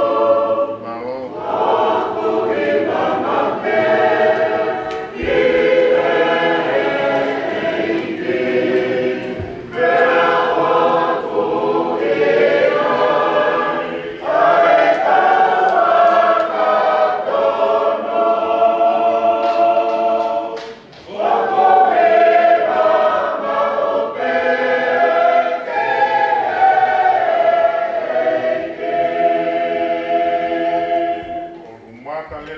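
A group of voices singing a hymn together, with long held notes in phrases and short breaths between them, and no clear instruments.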